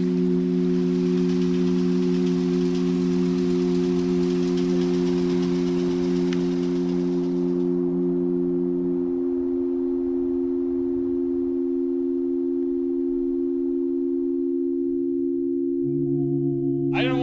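Sustained low drone of film score: several steady tones held together like a synth pad. The lowest tone drops out about nine seconds in and new low notes enter near the end. A soft hiss stops about eight seconds in.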